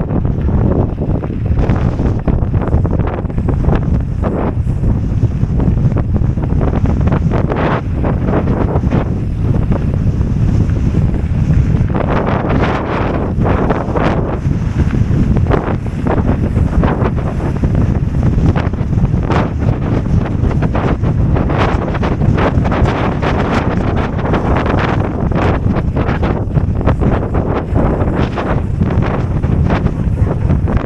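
Wind buffeting the microphone during a fast mountain-bike descent on a gravel road. Mixed in is the steady rattle of tyres and bike over loose stones.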